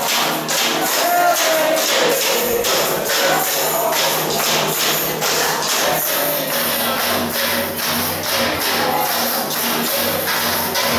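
Carnival bloco percussion band playing a fast, steady beat on large bass drums (surdos) and tambourines, with the deep drum strokes growing heavier past the middle.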